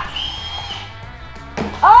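A short, steady high-pitched tone lasting under a second, then quiet, then a loud drawn-out 'oh' from a person near the end as a shot lands.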